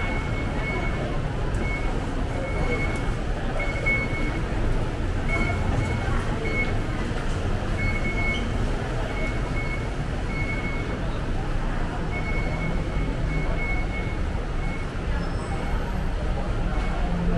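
Busy train-station concourse ambience: a steady rumble of crowd chatter and footsteps, with short, high-pitched electronic beeps repeating irregularly throughout.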